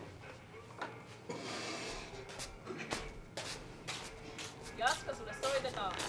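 A quiet room with faint rustling and a few small taps, then a voice calling out to someone near the end.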